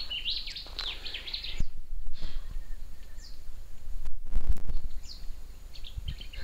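Birds chirping, a quick run of high, sweeping notes in the first second and a half, then a few single chirps. Low rumbling bumps come about two seconds in and again around four seconds in.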